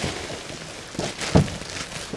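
Foam mattress in clear plastic wrap being pushed and handled: crinkling plastic, with two short soft thumps about a second in.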